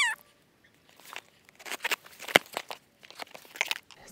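Scissors slitting the packing tape on a cardboard shipping box and the flaps being pulled open: irregular crackling and tearing with scattered clicks, one sharper snap about two seconds in.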